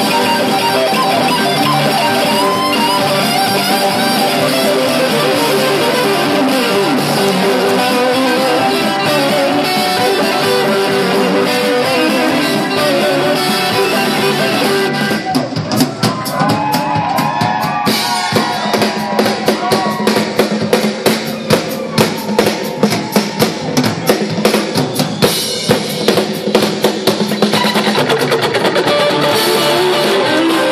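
Live southern rock band with electric guitars, bass and drum kit playing at full volume. About halfway through the sound thins to a drum-driven passage of quick, even hits with sliding guitar notes, and the full band comes back in near the end.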